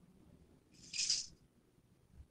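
A brief rustle of fabric being folded and smoothed by hand, lasting about half a second near the middle.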